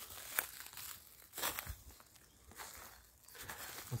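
Footsteps in dry fallen leaves and old grass on a forest floor, a rustling step about once a second.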